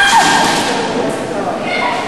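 Kendo fencers shouting kiai, loud high-pitched yells. One starts suddenly at the outset and fades over about a second, and a second, shorter shout comes near the end.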